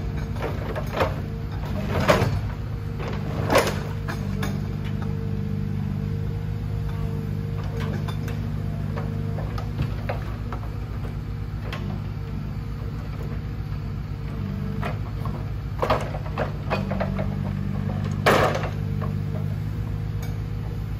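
Forestry forwarder's engine running steadily while its hydraulic crane works, with sharp wooden knocks from logs handled in the grapple: several in the first four seconds and a few more near the end, the loudest shortly before the end.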